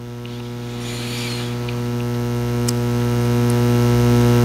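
Electrical mains hum: a steady low buzz that grows steadily louder across the pause.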